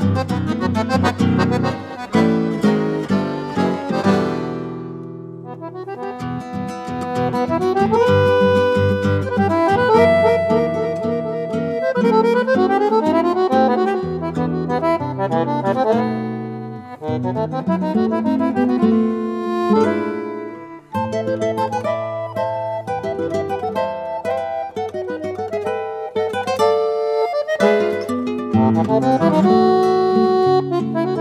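Chamamé played on accordion and acoustic guitar: the accordion carries a busy melody over guitar accompaniment. The music eases briefly about five seconds in and breaks off for a moment around twenty seconds in before carrying on.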